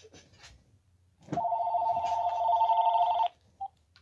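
Mobile phone ringing with an incoming call: a two-tone trilling ring that starts a little over a second in, lasts about two seconds and stops, followed by a short beep.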